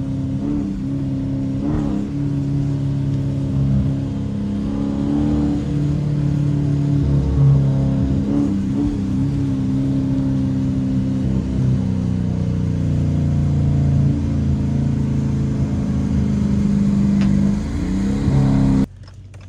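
Dodge Challenger R/T's 5.7-litre HEMI V8 cruising steadily at low speed, heard from inside the cabin as a low, even engine drone with small throttle changes, over tyre noise on a wet road.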